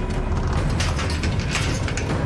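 Metal bar gate's latch being worked open: a few short metallic clicks and rattles, about a second in and again near the end, over a steady low rumble.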